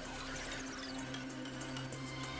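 Quiet background music with a steady low held note, under a faint soft rustle of playing cards being slid and flipped in the hand.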